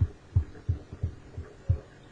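A run of soft, low thumps, about three a second.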